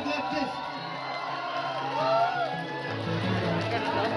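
Music playing over a hall's sound system with a steady bass line, under the voices and cheering of an audience crowd. The bass gets louder about three seconds in.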